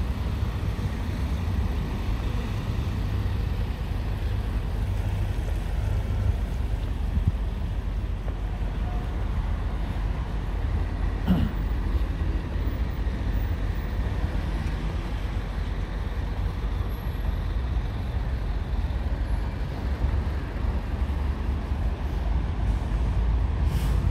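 Road traffic close alongside: a steady low rumble of trucks, vans and cars running on the road.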